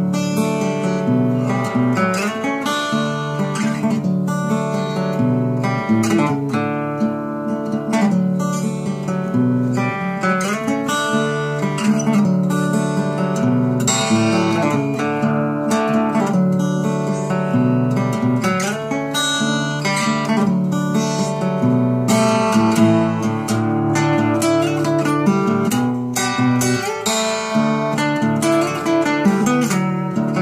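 Acoustic guitar in DADGAD tuning, picked in a loose, wandering tune, with low notes left ringing under the melody.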